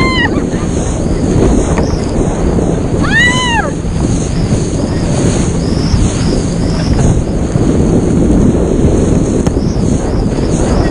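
Heavy wind buffeting a handheld action camera's microphone and water rushing beneath an inflatable banana boat moving fast over the sea. About three seconds in, one rider gives a single high shriek that rises and falls in pitch.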